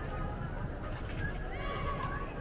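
Distant shouts and calls from young players and spectators over a steady low rumble of indoor sports-hall background noise.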